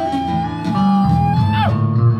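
Acoustic guitar music, with low notes moving beneath a long held higher note that falls away about a second and a half in.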